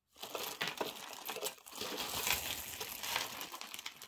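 Dense crinkling and rustling of crinkly packaging being handled, with many small crackles, dipping briefly about one and a half seconds in.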